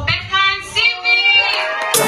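A high singing voice holding a couple of sliding phrases with almost no accompaniment, then a drum-heavy dance track comes in suddenly at the very end.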